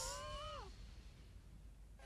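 A single short, high-pitched, meow-like cry that rises and then falls in pitch, lasting about a second, right after a brief hiss.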